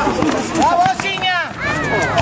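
Several men's voices shouting during an amateur five-a-side football match, with loud, high-pitched excited calls in the middle.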